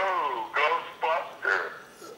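A man's voice coming through a phone on speaker, thin and tinny, in a few short bursts of talk or laughter.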